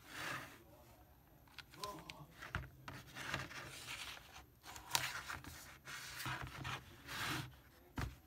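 Hands handling a homemade electric detonator box, its cord and alligator clips on a tabletop: a series of short rubbing noises with a few sharp clicks.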